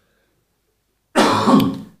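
A man coughs and clears his throat in one short, harsh burst that starts about a second in and lasts under a second.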